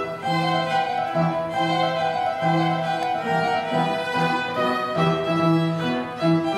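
A violin and an upright piano playing a classical duet, the violin bowing a line of changing notes over the piano's sustained lower notes and chords.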